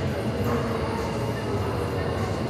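Steady low rumble of gym room noise, with faint voices in the background.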